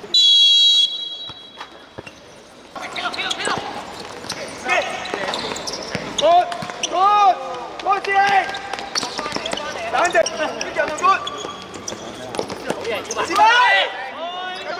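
A referee's whistle blown once, a loud steady blast of just under a second, to restart play. Then players shout and call to each other, with the thuds of the futsal ball being kicked and bouncing on the hard court.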